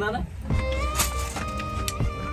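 Background music: a slow melody with long held notes over a steady low bass.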